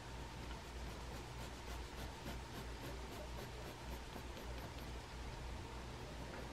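Mechanical pencil scratching on paper in quick, even shading strokes, about four a second, faint.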